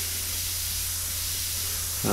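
Harder & Steenbeck Evolution AL plus airbrush with a 0.2 mm nozzle spraying paint: a steady hiss of air through the brush.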